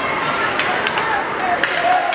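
Spectators' voices shouting in an ice rink during play, with a few sharp clacks of hockey sticks on the puck and ice, two of them close together near the end.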